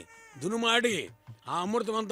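A voice singing long drawn-out notes that rise and fall in pitch, in two phrases with a short break a little past a second in.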